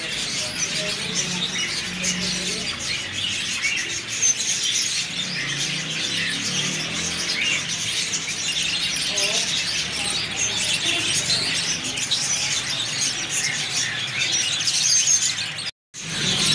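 A roomful of caged small birds, budgerigars and finches among them, chirping and tweeting over one another without a break. The sound cuts out for a moment just before the end.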